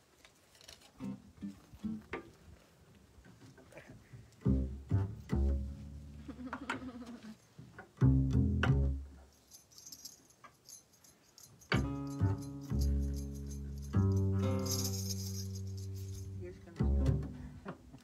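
Upright double bass plucked in single low notes that ring on, coming in about four seconds in after a few quiet plucks. The longest notes ring for a second or two near the end.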